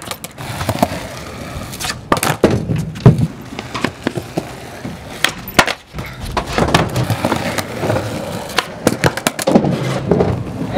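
Skateboard wheels rolling on concrete, broken by repeated sharp pops and clacks of the board's wooden deck and trucks hitting the ground as flatground tricks are tried and landed; the loudest clack comes about three seconds in.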